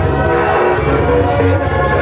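Techno played loud over a club sound system: a repeating pattern of short, horn-like synth chords over a steady, heavy bass beat.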